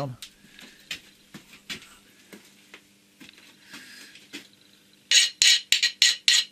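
Hand file rasping on the edge of a metal disc: faint scrapes and taps at first, then a quick run of about four loud rasping strokes near the end. The file biting into the corner shows the metal is soft.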